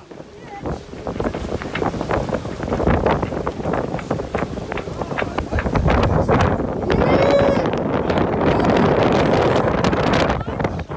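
Squall wind buffeting the microphone over the rush of waves and spray along a heeled sailboat's hull, in gusts that grow louder about six seconds in.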